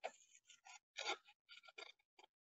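Scissors cutting through a sheet of paper: a few faint, short snips, one at the start, one about a second in and a quick cluster near the end.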